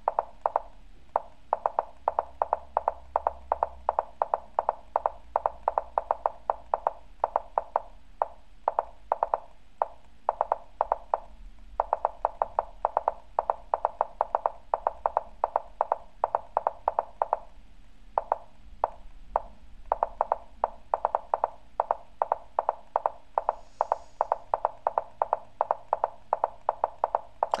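Lichess move sound effect, a rapid string of short wooden clicks, about four to five a second, each one a chess move played almost instantly with premoves. It pauses twice for about a second, a little before the middle and about two-thirds of the way through.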